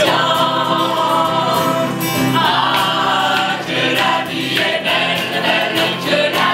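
Mixed choir of men and women singing in unison and harmony, holding long chords, with a new sung phrase starting about two and a half seconds in.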